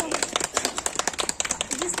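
Applause: hands clapping in quick, irregular claps right after shouts of "bravo".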